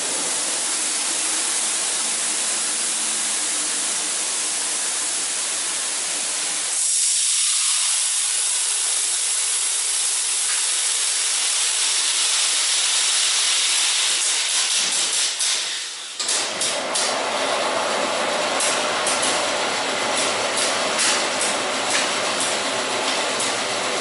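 SPA FireSense+ fire suppression system, with its bottle mounted upside down, discharging 4Fire Universal agent through its nozzles in a continuous loud hiss. About seven seconds in the hiss thins and rises in pitch. After about sixteen seconds it turns fuller and uneven, with crackles.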